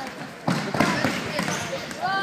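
Futsal ball thudding on a wooden sports-hall floor about half a second in, among players' shouts and running during play.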